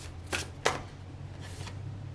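Tarot cards being drawn from a hand-held deck: two short, sharp card snaps in the first second, then a softer rustle.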